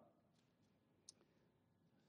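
Near silence: faint room tone, with one short faint click about a second in.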